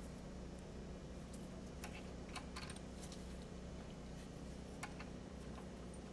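Faint, scattered clicks and ticks of small steel hardware as a half-inch flat washer, lock washer and nut are fitted by hand onto a bolt, over a steady low hum.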